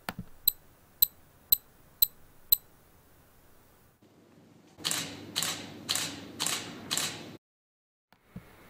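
Canon DSLR shutter firing five times in a row, about half a second apart, as an app-triggered time-lapse of five shots. Earlier come six short sharp clicks at the same half-second spacing.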